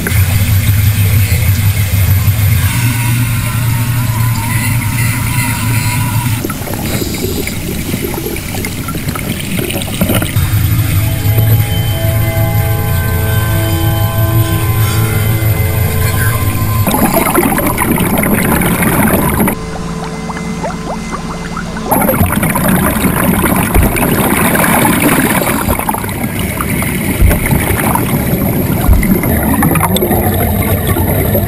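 Water pouring and splashing into the cabin of a sinking car as it floods, mixed with steady background music. About twenty seconds in, the sound turns briefly muffled and quieter, then the rushing water returns.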